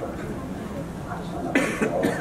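Low murmur of voices in a hall, with one short cough near the end.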